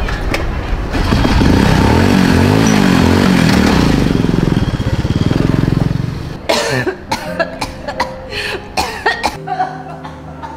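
Small underbone motorcycle's engine revving as it pulls away, its pitch rising and falling, then dropping off about six seconds in.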